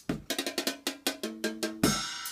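Red Dragon portable drum set played fast with drumsticks, about seven strokes a second on its small drums and pads, with a few short pitched ringing notes in the middle. Just before the end comes a loud stroke on a cymbal that rings on.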